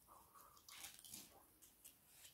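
Faint mouth sounds of a person chewing food, with a few short wet smacks and clicks clustered about a second in.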